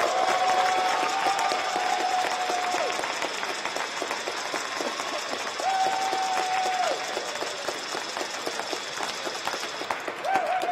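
Arena audience applauding, with a long held cheer standing out over the clapping twice: once from the start for about three seconds and again around six seconds in.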